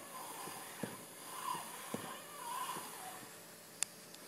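Faint voices of people talking in the room, with a few light handling clicks and one sharper click near the end.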